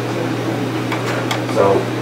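Room tone: a steady low hum, with a couple of faint clicks about a second in; a man says "So" near the end.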